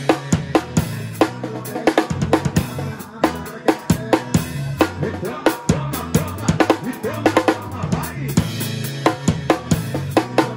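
Drum kit played live in a steady forró groove: snare, hi-hat and bass drum strokes several times a second. A bass line with changing held notes runs underneath.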